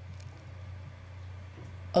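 Quiet, steady low hum with no distinct events: room tone in a pause between spoken phrases.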